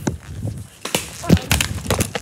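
A series of irregular knocks and bumps from a phone being handled and carried while it films, the loudest a little past the middle.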